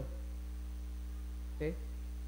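Steady low electrical mains hum, a constant drone that does not change. A man says one short word near the end.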